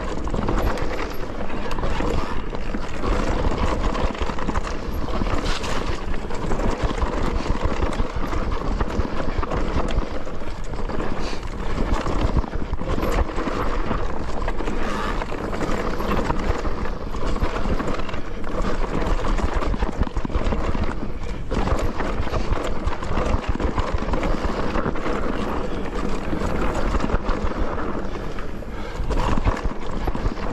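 Mountain bike riding down a rough dirt trail, tyres and frame rattling with a constant run of small irregular knocks over roots and rocks.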